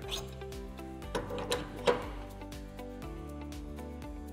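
Background music with steady held notes. Over it come short scraping, rattling sounds: one at the start and a few between about one and two seconds in, from the seed drill's calibration troughs being slid out and the collected seed being tipped into the weighing bag.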